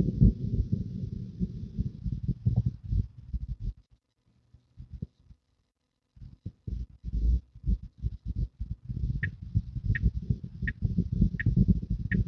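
Low road and drivetrain rumble inside a Tesla Model 3's cabin, with irregular low thumps. It drops almost to silence for about two seconds as the car stops, then picks up again as it moves off. From about nine seconds in, the turn-signal indicator ticks steadily, about three ticks every two seconds, as the car signals into a turn lane.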